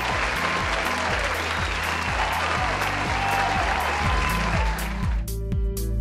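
Audience applauding over background music with a steady beat. About five seconds in the applause stops and the music carries on alone.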